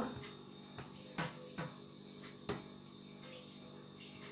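Soft, faint clicks and taps of hands pressing and flattening a sticky cocoa-biscuit dough ball in the palm, over a steady faint electrical hum and high whine.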